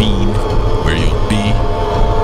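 A steady low rumbling drone, with three short garbled voice-like fragments over it: one at the start and two about a second in.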